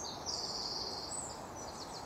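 Forest ambience: faint high bird chirps over a low steady hiss.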